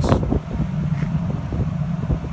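Wind buffeting the microphone over a steady low machinery hum, with a brief gust-like burst at the very start.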